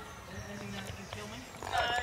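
A runner wading waist-deep through a muddy stream, water sloshing with his strides, under faint voices, with a louder voice near the end.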